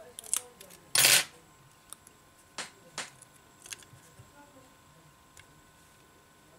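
Tweezers and the small plastic and metal parts of an iPhone 6 charging-port flex module being handled, giving a few sharp light clicks. About a second in there is one short, loud crackling rustle as the plastic liner is peeled off the double-sided tape.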